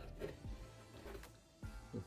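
Quiet background music, with a few faint knocks and scrapes of a corrugated cardboard box being handled as a pencil is pushed through its holes.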